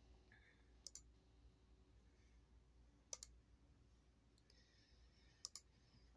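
Near silence broken by three faint computer mouse clicks, each a quick pair of ticks: about a second in, about three seconds in, and near the end.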